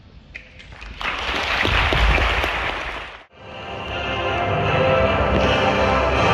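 Audience applause starting about a second in and cut off abruptly a little past halfway, then music begins and swells.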